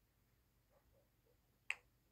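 A single finger snap, one sharp click near the end, against near silence.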